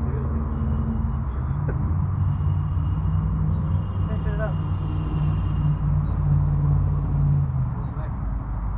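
Steady low hum of a motor vehicle's engine running throughout, swelling a little in the middle, with faint voices over it.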